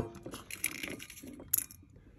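Light clicks and taps of small carburetor parts being handled on a workbench, the clearest about half a second in and about one and a half seconds in.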